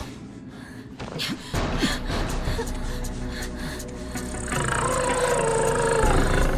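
Tense horror-film score: a low rumbling drone swells in about a second and a half in, and a held, slightly wavering high tone joins after about four seconds, growing louder toward the end.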